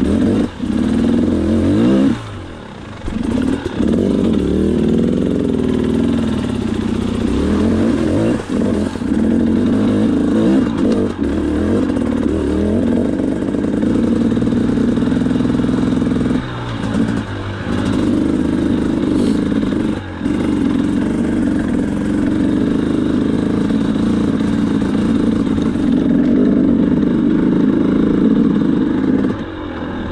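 KTM 300XC two-stroke dirt bike engine revving up and down under the rider's throttle while riding rough trail, with brief drops in revs about two seconds in, around 17 and 20 seconds, and just before the end.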